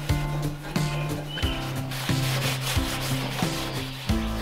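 A scouring pad scrubbing back and forth on a gas grill's stainless steel control panel, over background guitar music.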